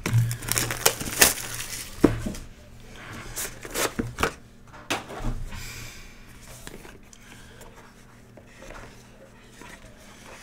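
Cellophane shrink-wrap being torn and crinkled off a trading-card hobby box, then the cardboard box being handled and its lid slid open. Sharp rustles and tears come in quick succession over the first half, then it settles to quieter handling.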